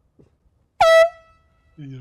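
A single short, loud air-horn blast about a second in: a high, brassy honk that stops sharply and leaves its tone fading away over the next half second.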